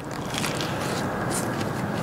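Chewing a mouthful of chicken Caesar wrap close to the microphone, with a few faint crunches over a steady rushing noise.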